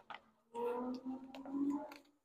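Light ticks and clicks of a small plastic food container being picked up and handled, under a faint steady hum in the second half of the moment.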